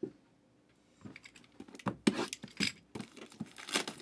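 Trading card box packaging being handled and torn open: a click at the start, then after about a second a run of irregular crinkling, tearing and scraping sounds.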